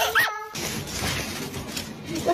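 A cat's short high cry, rising and falling once right at the start, then a noisy hiss that runs on.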